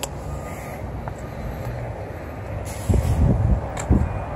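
Outdoor background of a car lot: a steady low rumble of traffic. About three seconds in comes a short burst of noise, and a knock follows near the end.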